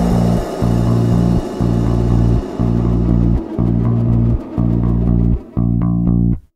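Indie rock band music: bass and guitar play sustained low chords in a steady pattern, each broken by a short gap about once a second.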